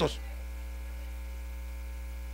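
Steady electrical mains hum in the sound system: a low, even buzz with a ladder of overtones, heard plainly in a gap in the speech.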